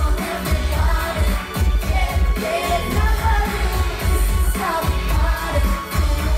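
Live pop music played loud through a concert PA: sung vocals over a steady heavy bass beat.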